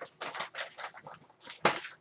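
Toy packaging being opened and dug into by hand: short rustling, scraping bursts, the loudest near the end.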